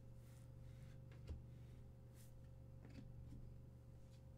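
Near silence over a steady low electrical hum, with a few faint slides and taps of trading cards being handled and shuffled. The loudest is a short tap about a second and a quarter in.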